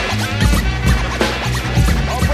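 Hip hop track with turntable scratching over a drum beat and bass: short, quick back-and-forth pitch sweeps cut through the beat.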